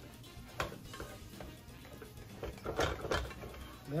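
Metal utensil scraping and clinking against a skillet while stirring scrambled eggs: a sharp clink about half a second in, then a run of scraping strokes near three seconds.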